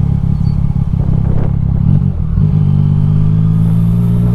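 Yamaha Tracer 900 GT's three-cylinder engine running through an Akrapovic exhaust at low town speed, heard from the rider's seat. It breaks briefly about two seconds in, then settles into a steady, even note.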